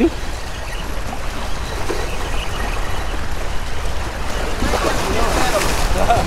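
Small waves washing and splashing against jetty boulders at the water's edge, over a steady low rumble of wind on the microphone. Faint voices come in about five seconds in.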